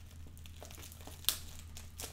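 Clear plastic bag holding Lego parts crinkling faintly as it is handled, with one sharp crackle a little past halfway.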